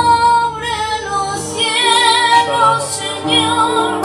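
A man singing a devotional song in a high voice, holding long, wavering, ornamented notes without clear words, accompanied by a strummed acoustic guitar.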